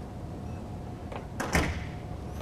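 Steady low room hum, with one short, sudden noise about one and a half seconds in.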